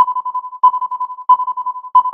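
Electronic intro jingle: a rapid train of beeps on one high pitch, restarting with a stronger beep about every two-thirds of a second, like a phone ringtone.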